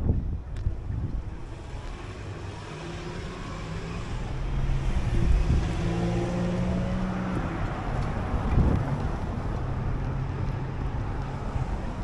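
A passenger van's engine running as it drives past close by. The sound grows louder from a few seconds in and eases off near the end, with wind noise on the microphone throughout.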